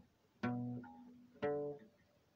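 Acoustic guitar with two chords strummed about a second apart, each ringing out and fading.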